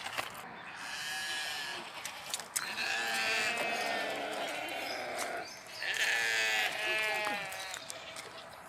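A series of long, quavering bleats from farm animals, several calls one after another with short gaps between them.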